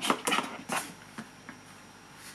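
A white cardboard box and its inserts being handled as the contents are taken out: a few short taps and rustles in the first second and a half, then quieter.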